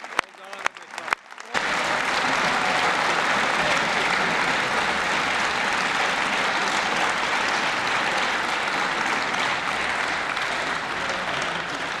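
A few scattered hand claps, then sustained applause from an audience that comes in suddenly about a second and a half in, holds steady and eases slightly near the end.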